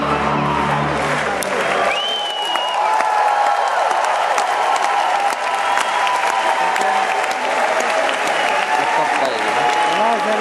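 Electronic music with a heavy bass beat cuts off about two seconds in, and a large audience applauds, with voices calling out over the clapping.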